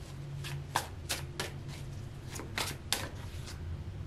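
Deck of oracle cards being shuffled by hand to draw a card: a string of short, irregular flicks and clicks.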